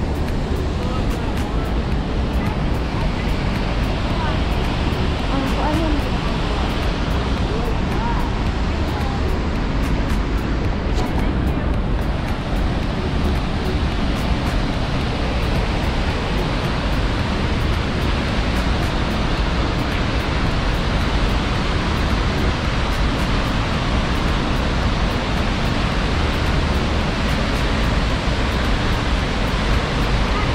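Large waterfall on a fast river, pouring through a narrow rock gorge: a steady, unbroken rush of water that stays at the same level throughout.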